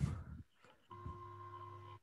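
Faint steady electronic tone, two pitches held together over a low hum, starting about a second in, after the last word of a voice.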